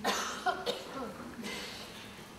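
Coughing in a seated audience: a sudden cough right at the start, followed by a few shorter coughs and throat sounds.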